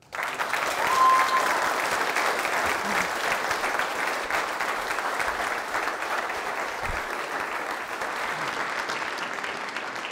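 An audience applauding a finished speech, the dense clapping starting at once and tapering off slowly, with one brief high call from the crowd about a second in.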